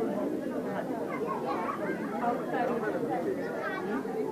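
Shoppers and stall-keepers chattering, many voices overlapping at a steady level with no single voice standing out.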